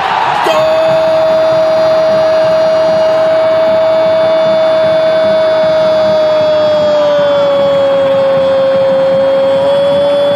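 A Brazilian football commentator's drawn-out goal shout: a single "gooool" held on one note for about ten seconds, sagging slightly in pitch in the last few seconds.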